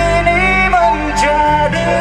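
Live rock band playing a pop-rock song through a PA: electric guitars, keyboard, bass and drums, with long held melody notes.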